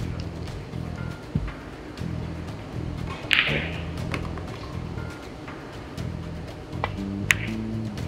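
Background music with a low, repeating melody. Over it, a few sharp clicks of pool balls, the loudest a little over three seconds in and another near the end.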